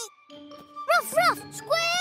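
Short, high, rising-and-falling voice calls from a cartoon animal character, two quick ones about a second in and a longer wavering one near the end, over light tinkling background music.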